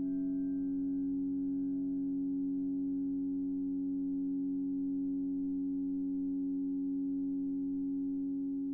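Steady drone of EBows sustaining grand piano strings: a low chord of held tones at an even level. The ring of a high piano note struck just before fades away over the first couple of seconds.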